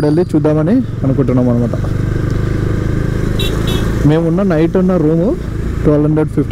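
Motorcycle engine running at a steady riding speed as a low, steady drone with road noise, under a man's voice talking.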